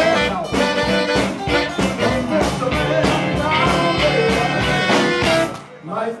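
Live blues band playing, with two saxophones over drums and bass on a steady beat. The band stops briefly near the end.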